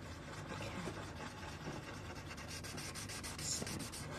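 Paper blending stump rubbing over a paper drawing tile in quick short back-and-forth strokes, smudging graphite into soft background shading. The strokes come faster and closer together in the second half.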